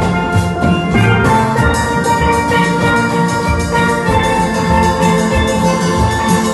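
A steel band of several steel pans playing a tune together, held melody notes ringing over low bass notes.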